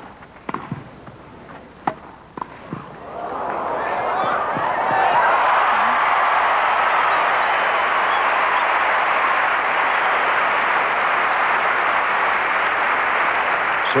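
A few sharp pops of a tennis ball struck by rackets on a grass court, then a stadium crowd breaking into applause about three seconds in, swelling and continuing loudly.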